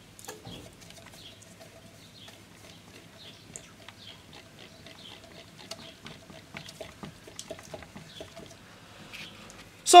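Car radiator fan with a brushed DC motor being spun by hand, with faint irregular ticks and light knocks from the hand strokes and the turning fan, and a faint steady hum underneath.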